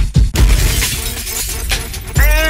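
Baltimore club music mix in which the pounding kick drum drops out just after the start and a loud crashing noise effect takes over, thinning out toward the end.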